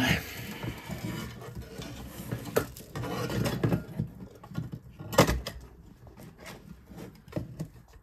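Handling noise from an opened ATX computer power supply being turned over on a workbench: its thick braided cable bundle rustling and scraping, and the metal casing clattering, with one sharp knock about five seconds in.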